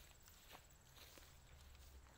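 Very faint footsteps, a few soft steps, over a low hum; otherwise near silence.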